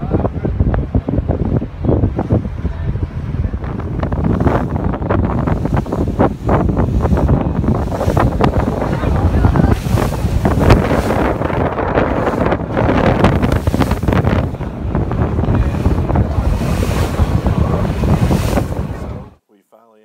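Wind buffeting the microphone on the deck of a moving boat, mixed with the rush of water along the hull. It cuts off abruptly near the end.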